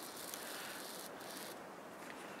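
Faint rustling over a quiet outdoor background.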